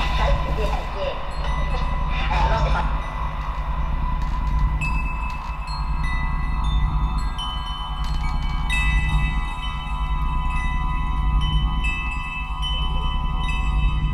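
Background music: a low sustained drone with high, chime-like bell notes entering one after another from about five seconds in.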